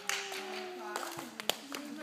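Audience applauding for a young ballet student as she receives her award certificate, with voices over the clapping. A single sharp click about one and a half seconds in.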